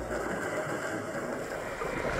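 Steady muffled underwater rush and rumble picked up by a camera housing beneath the sea.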